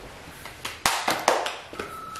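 Several sharp hand taps and knocks, then near the end a steady high beep begins: the test-card tone that opens the music video.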